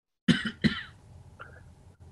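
Two short coughs in quick succession, one right after the other, from a participant on a video call.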